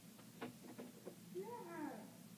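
A cat meowing once, quietly, near the end: a single call that rises and falls in pitch. It comes after a few soft clicks about half a second in.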